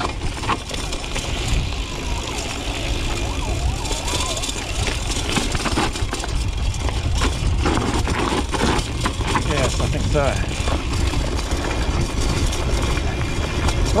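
BMX rolling fast down a rocky dirt trail: its tyres crunch over loose stones while the bike rattles and knocks over bumps, under steady wind noise on the handlebar camera's microphone.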